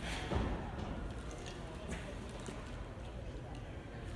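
Three karateka moving through a kata in unison, their bare feet landing and sliding on a foam competition mat and their gi sleeves snapping. A single dull thud sounds about a third of a second in, and a lighter click near two seconds.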